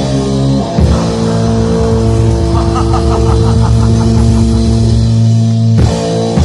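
A 1985 thrash/black metal demo recording: distorted electric guitar holding chords over bass and drums, with a fast repeating figure in the middle and a drum hit near the end.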